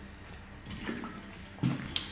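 A person drinking from a plastic bottle: a few quiet swallows and the sound of liquid, the loudest swallow near the end.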